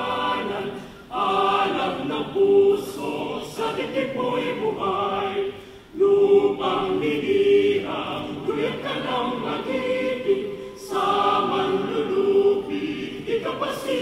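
A mixed university chorale singing, in sustained phrases about five seconds long with a brief break for breath between them.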